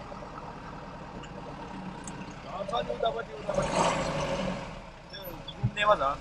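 A pickup engine running low and steady, heard from inside the cab. A louder rush of noise swells for about a second and a half midway, with faint voices just before it.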